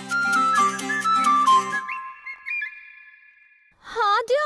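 Background score: a flute-like melody stepping down over a rhythmic accompaniment, which stops about two seconds in, leaving a high held note that fades away. Right at the end a sudden loud wavering sound breaks in.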